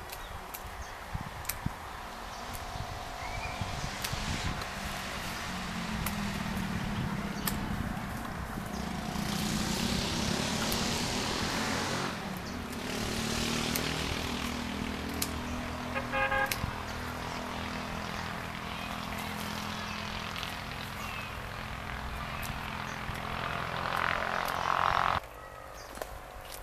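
A motor engine hums steadily for most of the stretch, swelling with two rushes of hiss about ten and fourteen seconds in, then cuts off suddenly near the end. Scattered sharp clicks from hand pruning shears cutting apricot branches come through it.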